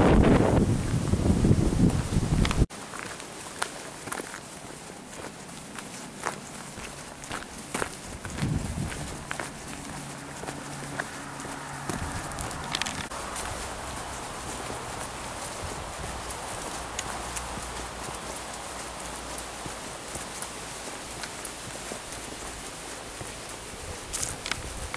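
Loud wind buffeting on the microphone for the first few seconds, cut off abruptly, then a walker's footsteps on a path, heard as scattered short steps over a faint steady background.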